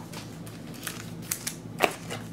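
A few faint clicks and rustles of trading cards and their packaging being handled on a table, with a sharper click near the end.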